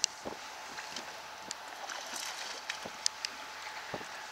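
Steady wind and water noise around a small boat, broken by a few sharp clicks and knocks, the loudest right at the start.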